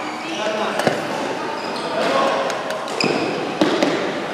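Sneaker squeaks and footsteps on an indoor badminton court between rallies, with a few sharp knocks and voices in the echoing hall.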